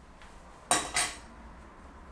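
Two sharp metallic clinks about a third of a second apart, from small metal curtain fittings knocking together as they are handled.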